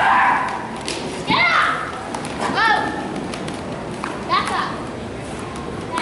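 Short shouted calls to a yoked steer team, four of them about a second apart, each rising and falling in pitch, with a few sharp taps between them.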